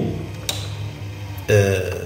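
Steady low electrical hum, with a single sharp click about half a second in and a brief voiced hesitation from a man near the end.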